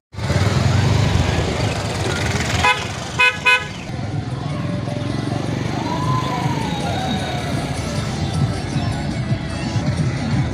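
A vehicle horn honking three short times, about three seconds in, over a steady outdoor background rumble.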